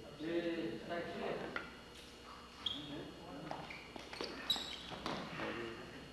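A man thrown to the floor in a stick-fighting takedown: several sharp knocks and a thud of a body hitting the floor, among low voices.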